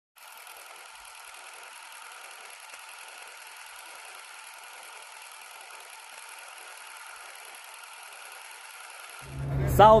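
Faint, steady hiss-like noise with no beat. About nine seconds in it cuts off, and a man's voice begins over a low hum.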